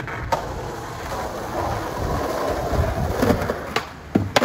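Skateboard wheels rolling over rough asphalt, with a sharp click just after the start. Near the end comes the loud crack of the tail popping an ollie.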